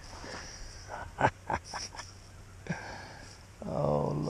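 Small stones clicking and scraping as fingers pick a tiny stone point out of loose gravel, with a few sharp clicks about a second in. Near the end a man makes a short wordless vocal sound, a held hum.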